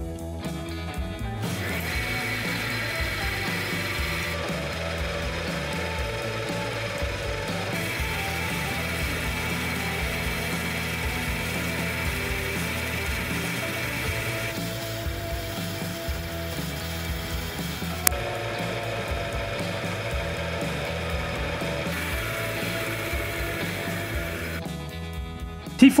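Oil lubricity (film-strength) tester running steadily under load, its electric motor driving a steel test bearing in a cup of oil, a continuous mechanical whir and grind, with background music over it.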